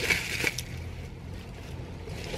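Plastic bubble-wrap packaging rustling and crinkling for about half a second, with a couple of small clicks. A low steady rumble follows.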